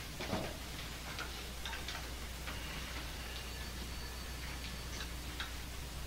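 Quiet room tone with a steady low hum and a few faint, irregularly spaced ticks. A brief murmur of a voice comes right at the start.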